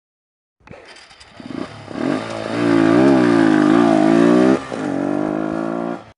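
Logo intro sound effect: an engine-like drone that swells up after a short silence and wobbles up and down in pitch at its loudest, then settles and cuts off at the end.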